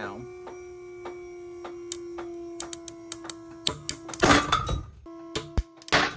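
Dynamic rope slipping and tearing under load in an alpine butterfly knot, against the steady hum of a pull-test rig: irregular sharp clicks and pops growing more frequent, a loud crunching stretch about four seconds in, and another loud crack right at the end. The sounds are the knot slipping and the sheath glazing and tearing under high force.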